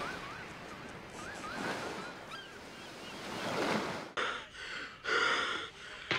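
A steady rushing noise like surf or wind, with a faint warbling whistle repeating in the first second or so. Two swelling whooshes follow, about four and five seconds in.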